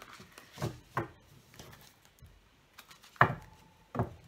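Large tarot cards being handled on a table, with a few soft taps and knocks of the cards.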